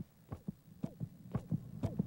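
Cartoon heartbeat sound effect: a fast, pounding heartbeat of low thumps, about two a second, marking a character's mounting stress.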